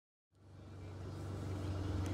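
Dead silence, then, about a third of a second in, the steady low hum of a car engine idling fades in and grows louder.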